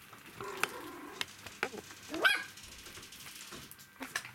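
Three-week-old poodle puppies making small vocal sounds as they play: a wavering whine in the first second, then a loud, rising yelp a little after two seconds in. Light clicks and knocks are scattered throughout.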